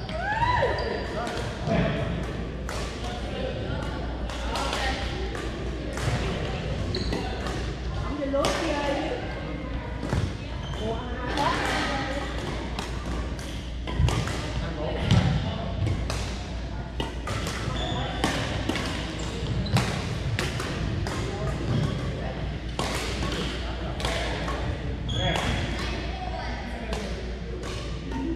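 Badminton rackets striking a shuttlecock in a rally, sharp hits at irregular intervals, with voices from around a large, echoing gym hall.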